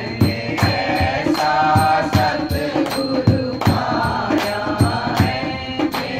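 Men's voices singing a Hindi devotional bhajan as a chant, kept in time by steady hand clapping at about two and a half claps a second.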